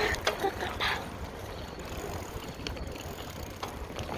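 Bicycle being ridden: steady rumble of wind on the microphone and rolling tyres, with a few scattered mechanical clicks and rattles from the bike.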